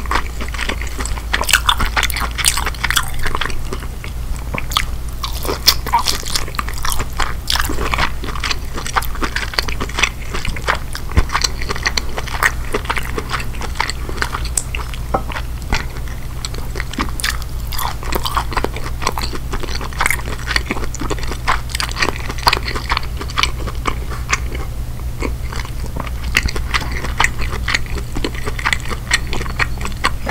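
Close-miked chewing of king crab leg meat coated in creamy Alfredo sauce: wet, sticky mouth clicks and smacks in an irregular stream, over a steady low hum.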